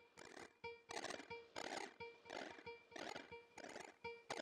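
Quiet experimental electronic improvisation: rhythmic bursts of hissing noise, about three a second, with short steady tones sounding between them.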